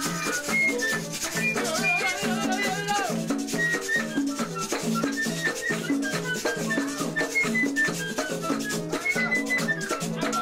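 A Latin-jazz parranda band playing live: a flute carries a line of short melodic notes over a repeating bass figure and busy shaker-type percussion.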